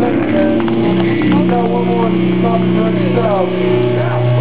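Live doom metal band on stage: electric guitar and bass hold a long, steady low chord ringing out through the amplifiers, with a man's voice calling out over it.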